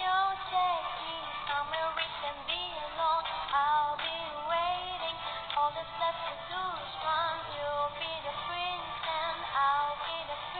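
A young woman singing a flowing melody, her voice gliding up and down in pitch.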